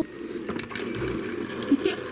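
Small plastic toy bumper car and dolls handled on a wooden floor: a steady scraping rustle with a few light clicks.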